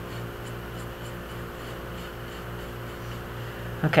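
Faint light scratching of a stain-cleaning brush worked over soft-fired porcelain greenware, heard over a steady low hum.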